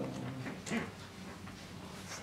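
Sheets of paper being handled and leafed through: a soft rustle or crackle about two-thirds of a second in, after a brief faint low hum at the start.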